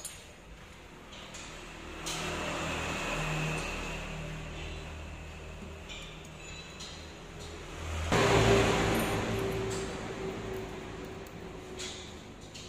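Compressed air from a workshop compressor line, rushing as a rebuilt shock absorber is being charged with gas. It starts about two seconds in, turns much louder with a steady tone about eight seconds in, then fades.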